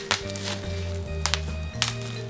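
Bubble wrap pinched between fingers, giving a few sharp pops, two of them close together near the end, over background music with a steady bass line.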